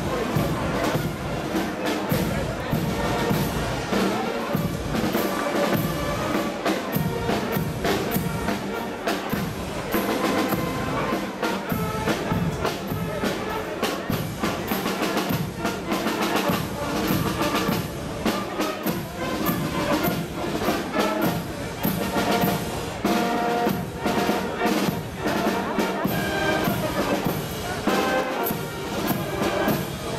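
A carnival guard's marching band playing brass and drum march music, with trumpets and trombones over a steady drum beat.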